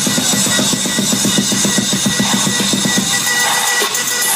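Loud live electronic music over a large concert PA, with a fast, even run of drum hits finger-drummed on a drum-pad sampler. The drum run stops a little after three seconds in, leaving the rest of the track playing.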